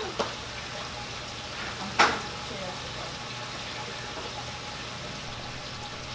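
Steady hissing background noise, with one sharp click about two seconds in.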